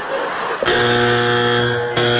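Britain's Got Talent judges' X buzzer: a loud, steady, harsh buzz that comes in suddenly about two-thirds of a second in and holds. It signals a vote against the act.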